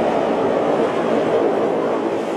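Audience applauding steadily, a dense clatter of many hands clapping.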